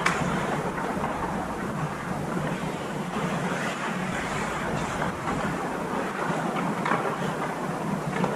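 Ice hockey skates carving and scraping on the ice, with a steady low hum underneath and a few faint clicks.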